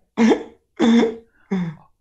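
A person's voice: three short vocal sounds in quick succession, each under half a second.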